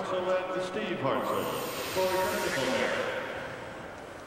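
A TV commentator laughing in breathy chuckles over steady arena background noise.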